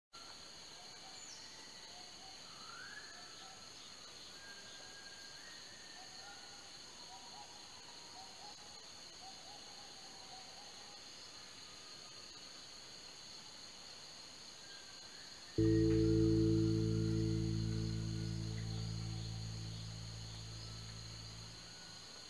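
Rainforest ambience: a steady high insect drone with scattered short bird calls. About two-thirds of the way through, a sustained low chord of ambient music comes in loud and slowly fades away.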